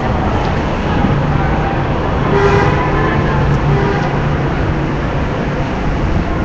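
City street traffic noise, with a long vehicle horn sounding from about a second and a half to four and a half seconds in.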